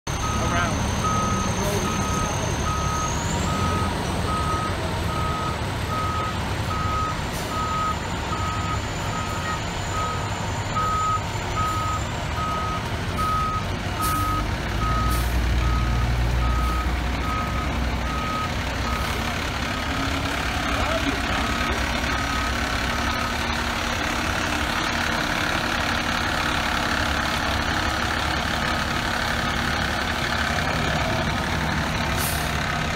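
Fire truck's back-up alarm beeping steadily over its diesel engine running as the tower ladder reverses. The engine rises briefly about halfway through, and the beeping stops about three-quarters of the way in.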